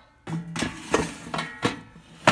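About four light knocks and clatters in a little over a second, starting about half a second in: an air fryer basket being handled as it goes to a GoWISE USA air fryer.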